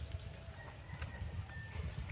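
Low, uneven wind rumble on the microphone, with a faint steady high-pitched drone and a couple of faint, short, thin whistled tones.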